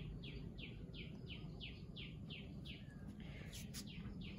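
A bird calling faintly in a rapid, even series of short high notes, each sliding downward, about four a second, stopping shortly before the end.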